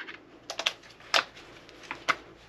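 A few light clicks and taps as the trigger-group retaining pins are fitted into a Benelli SuperNova pump shotgun's receiver, the loudest about a second in.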